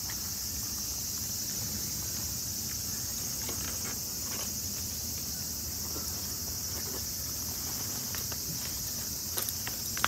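Steady high-pitched insect chorus, with a few light taps near the end.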